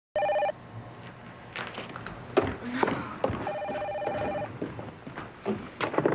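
A telephone ringing twice with a pulsing, trilling ring: a short burst at the start and a longer one of about a second midway. Knocks and clatter come between the rings, and there is a louder clunk near the end as the phone is picked up.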